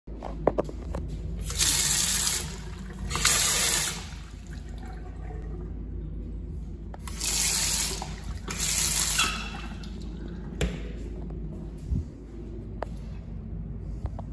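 Restroom sink faucet turned on and off, running water into a vitreous china basin in four short bursts of about a second each, in two pairs.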